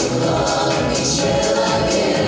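A mixed vocal ensemble of women and men singing together into handheld microphones, several voices holding sustained notes at once, amplified over a PA speaker.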